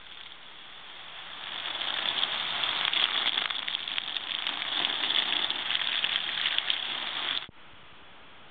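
Water from a garden hose spraying onto flattened cardboard sheets, a dense crackling patter of spray. It builds over the first couple of seconds and cuts off suddenly near the end.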